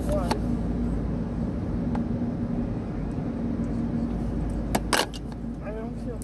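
Steady low rumble and hum of a car heard from inside the cabin, with a couple of sharp clicks about five seconds in.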